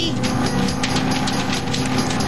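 Cartoon sound effect of a car engine idling: a rapid, even chugging of about seven beats a second over a steady low hum.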